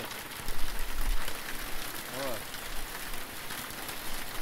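Hail and heavy rain falling on a yard: a steady, dense hiss of many small hits, with a few low bumps about half a second and a second in.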